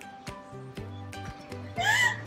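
Soft background music with a steady beat. Near the end comes a young woman's loud, high, wavering wail: she is crying in hysterics.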